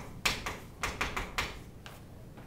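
Chalk writing on a chalkboard: a quick, uneven run of about seven sharp taps and short scratches as a word is written, ending just before the end.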